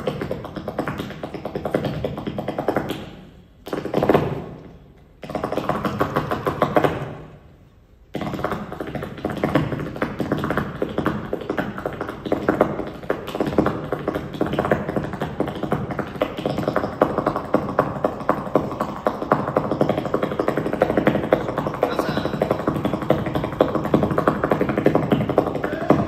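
Flamenco dancer's footwork (zapateado): rapid heel and toe strikes of shoes on the stage floor over a flamenco guitar. The sound drops away briefly twice in the first eight seconds, then runs on fast and dense.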